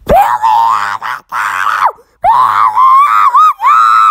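A person's high-pitched screaming in two long cries. The first starts at once and breaks off a little before two seconds in; the second starts just after and warbles up and down.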